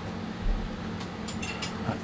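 A soft thump about half a second in, then a few light clicks of something being handled at the aquarium, over a steady low hum.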